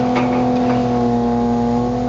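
An engine or motor running steadily nearby, a constant low hum with overtones that does not change in pitch, over a haze of outdoor traffic noise.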